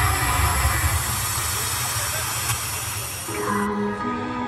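A loud rushing noise effect with a low rumble played over the show's sound system, cutting off suddenly near the end as music starts with held notes.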